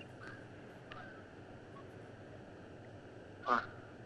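Faint steady hiss and hum of an open telephone line in a pause, with a couple of tiny ticks, then a brief vocal sound from the caller over the phone line about three and a half seconds in.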